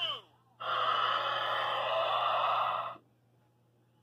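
Electronic sound effect from a toy race track's finish gate. A falling electronic sweep ends right at the start, and about half a second later a hissing, crowd-like noise plays for about two and a half seconds, then cuts off suddenly.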